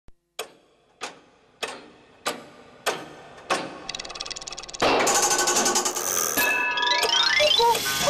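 Cuckoo clock ticking loudly with a ringing tail, about once every 0.6 s. About four seconds in, the ticks give way to fast clockwork whirring. Near five seconds a loud clattering, music-like burst breaks out and ends in a run of rising glissando sweeps as the cuckoo is about to strike.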